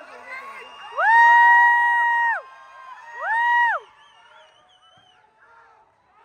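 Audience member close by whooping loudly twice, a long high held 'woo' about a second in and a shorter one around three seconds, over a cheering crowd.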